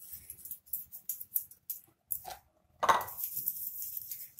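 Light clicks and taps of hands handling dough balls on a wooden rolling board, with one louder knock just before three seconds in.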